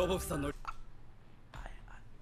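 A voice over steady held music tones that stops about half a second in. It is followed by quiet, faint whispering and breath sounds.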